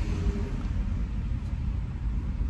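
Steady low rumble of an idling vehicle engine, heard from inside a car cabin.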